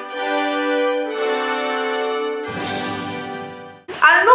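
Short musical jingle: three held chords, one after another, fading out just before the end.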